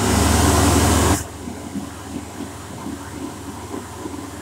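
Airdri Classic push-button hand dryer switching on: the fan blows with a loud rush and a low motor hum, dropping sharply about a second in to a steadier, quieter running noise.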